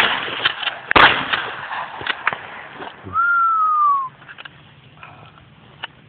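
Two shots from a 12-gauge Mossberg pump-action shotgun, one right at the start and another about a second later. Then, about three seconds in, a single whistled note falls in pitch for about a second.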